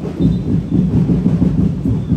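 Massed festival drums of a Dinagyang tribe's percussion ensemble playing a fast, continuous, dense beat, heavy in the bass.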